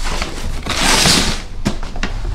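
A cardboard shipping box being handled and lifted: a rustling scrape lasting under a second, then two sharp knocks.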